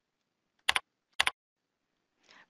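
Two computer keyboard keystrokes, about half a second apart, typing the digits "10" into a form field.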